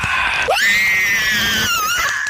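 A high-pitched scream that shoots up in pitch about half a second in, holds, then wavers downward near the end, preceded by a brief noisy hiss.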